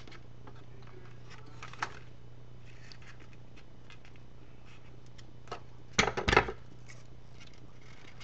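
Paper and craft tools handled on a tabletop: scattered light ticks and rustles, with a louder cluster of knocks and rattles about six seconds in. A steady low electrical hum runs underneath.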